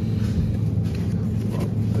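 Steady low hum and rumble of a supermarket's background noise, with a few faint clicks.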